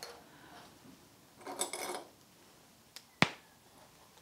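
Fabric pieces rustling briefly as they are handled and lined up, then a single sharp click a little after three seconds in.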